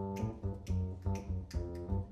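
Live jazz: plucked upright double bass notes and keyboard, with a sharp hand clap about every half second keeping time.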